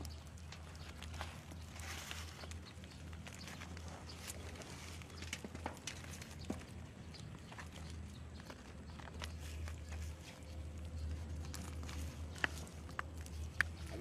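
Faint, scattered crunches, taps and rustles of hands firming soil around a seedling in a plastic polybag, over a low steady rumble.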